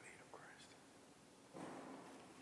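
Hushed church interior, near silence, with faint sounds of people walking past: two short squeaks just after the start, then a brief soft noise, the loudest sound, near the end.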